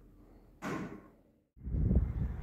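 A brief sharp noise about half a second in that dies away within half a second, then, after a moment of dead silence, a steady low outdoor rumble.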